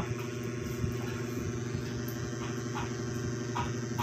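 A steady low mechanical hum, like a small motor running, with a few faint ticks.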